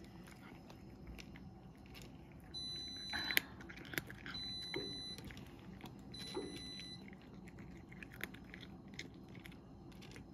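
A cat crunching dry kibble, a continuous run of small crisp crunches. Three high electronic beeps, each under a second, sound about two and a half, four and a half and six seconds in.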